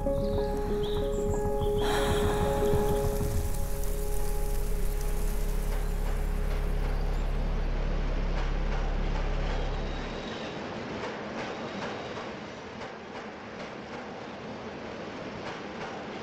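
Soft music fading out over the first several seconds while a subway train's running noise rises beneath it: a steady hiss with faint clicks of the wheels on the rails. About ten seconds in the deep low drone stops and the lighter rattle and hiss of the moving car goes on, quieter.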